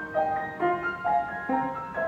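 Upright piano being played: a light melody of short, separate notes over lower notes struck roughly every second.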